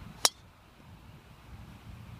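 Golf club striking a ball off the tee: a single sharp crack about a quarter second in, over a low background rumble.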